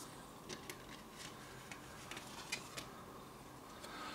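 Faint handling sounds of a CD being slid out of a card sleeve: a scattering of small clicks and paper rustles.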